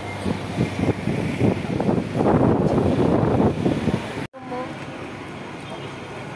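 Bus and street traffic noise heard from the open upper deck of a moving tour bus, growing loudest in the middle. It cuts off abruptly at an edit, leaving a quieter street background with faint voices.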